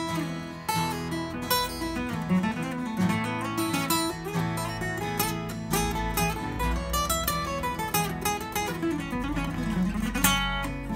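Faith Trembesi Neptune acoustic guitar, with an Engelmann spruce top and Trembesi back and sides, played fingerstyle: a continuous run of plucked notes over ringing bass notes.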